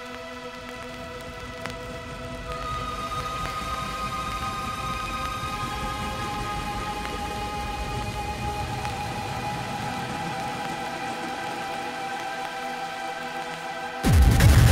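Quiet breakdown of an electronic hardcore track: a sustained synth pad chord over a steady noisy hiss, the held notes changing a few times and the music gradually getting louder.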